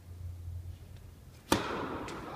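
A tennis racket strikes the ball on a serve: one sharp crack about one and a half seconds in, ringing on in the echo of an indoor hall.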